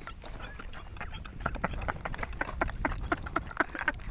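A person making rapid, sputtering vocal noises: a string of short, irregular bursts.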